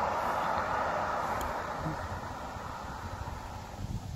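A vehicle driving past on the road, its tyre and engine noise a steady rush that fades away over a few seconds.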